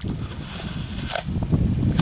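Wind buffeting the microphone, a steady low rumble, with a short sharp click about a second in.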